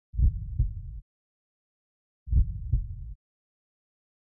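Heartbeat sound effect: two low double thumps about two seconds apart, each cut off abruptly, with silence between.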